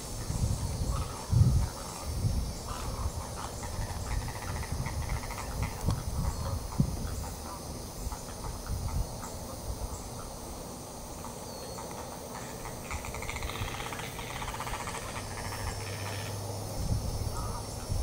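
Outdoor ambience: irregular low bumps and rumbles, a steady hiss, and faint bird calls that grow a little busier past the middle.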